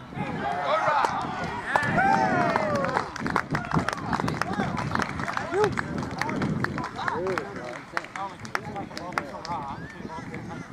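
Several voices shouting and calling out over one another during open rugby play, loudest in the first few seconds, with scattered sharp knocks.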